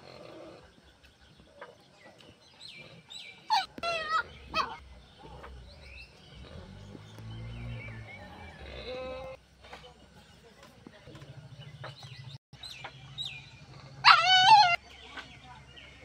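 Animal calls in a farmyard. A short run of loud calls comes about four seconds in, and a single loud, wavering call comes near the end, with fainter calls between.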